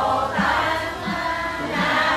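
A congregation, mostly women's voices, sings a Vietnamese Buddhist chant together. A low beat keeps time about every two-thirds of a second.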